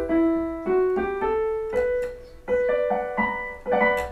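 Electronic keyboard played with a piano sound: a short line of single notes stepping upward, then a few higher notes overlapping near the end. It demonstrates harmony in E minor using a major fifth chord.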